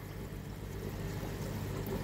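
Steady trickle of water in an aquarium over a constant low hum, with no distinct knocks or splashes.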